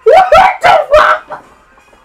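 A man's high-pitched laughter in four short, loud bursts during the first second, trailing off in a couple of fainter ones.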